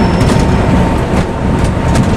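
Inside a moving bus: steady engine and road rumble, with a faint constant whine and a few sharp rattles and clicks from the cabin.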